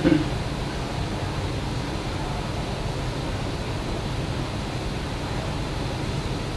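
Steady low hum and hiss of room tone in a small meeting room, even and unchanging throughout.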